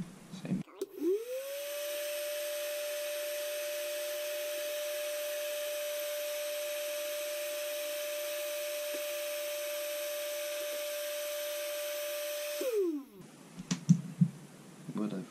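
Black and Decker heat gun switched on about a second in, its fan whine rising quickly to one steady pitch over a rush of blown air. It runs steadily for about twelve seconds, then is switched off and the whine falls away as the fan spins down.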